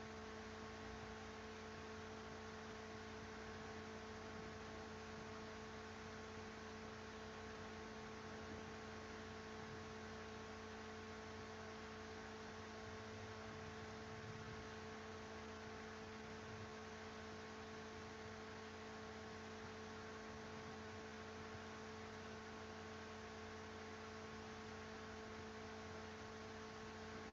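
A steady electrical hum, several even tones held over a faint hiss, unchanging throughout.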